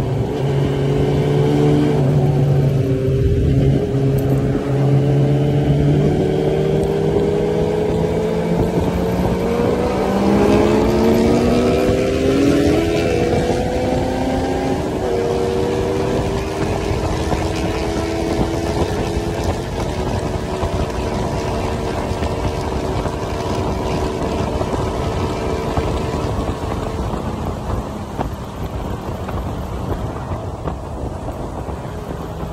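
Suzuki Bandit inline-four motorcycle engine under way. It climbs in pitch as it pulls through the revs over the first half, then holds a steady note at speed, with a steady rush of wind and road noise.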